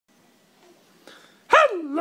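Quiet room tone, then about a second and a half in, a puppeteer's put-on high Grover voice starts a drawn-out greeting, its pitch sliding down.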